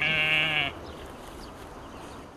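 A sheep bleating once, a short quavering call in the first second, followed by faint steady background noise.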